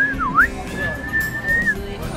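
A young girl whistling: a quick swoop down and back up, then one long steady note held for about a second.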